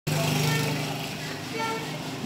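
A motor vehicle's engine running steadily close by, loudest at the start and easing off over the first second and a half, with faint voices.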